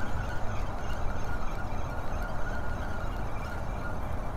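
Steady outdoor city background noise, mostly a low rumble, with a faint steady high tone held throughout.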